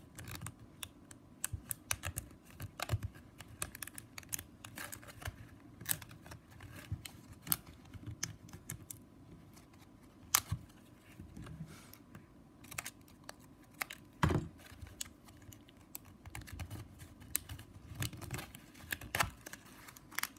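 Plastic strapping band being worked by hand, its strip ends slipped and pressed in under the woven strands of a small basket: irregular light clicks and rubbing, with a few sharper clicks.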